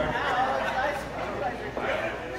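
Indistinct chatter: several people talking, with no music playing.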